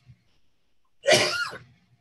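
A man coughing once, a single sharp burst about a second in that fades quickly.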